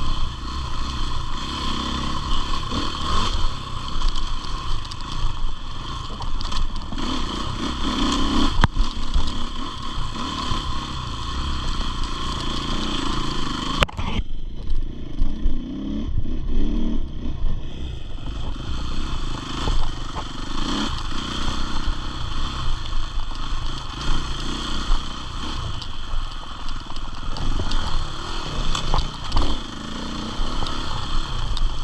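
KTM enduro motorcycle ridden along a dirt trail, its engine revving up and easing off with the throttle, with clatter from the bike over rough ground. A sharp knock comes about 14 seconds in.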